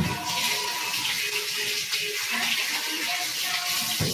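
Steady rushing hiss of running water, even and unbroken, over faint background music.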